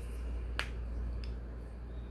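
A sharp click about half a second in and a fainter one a little after a second, over a low steady hum.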